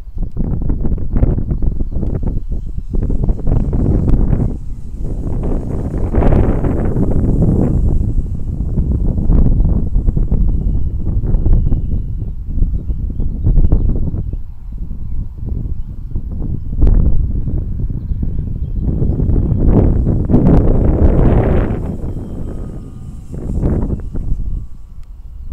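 Wind buffeting the camera microphone in irregular gusts, a loud low rumble that swells and drops, strongest around six and twenty-one seconds in.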